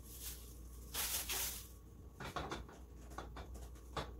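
A plastic bag crinkling as peanuts are tipped into a saucepan, in short rustling bursts with the longest about a second in, followed by a few light clicks.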